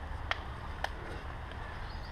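Two sharp clacks about half a second apart: river stones knocking together underfoot as someone steps over rocks at the water's edge, over a steady low rumble.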